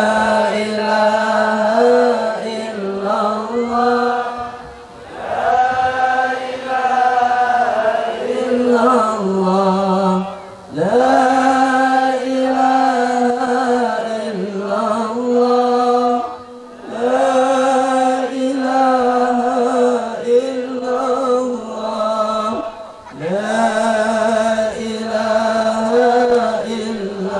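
Islamic dhikr chanted over and over: a sung phrase held on long steady notes, repeated in the same shape about every five to six seconds with short breaks between.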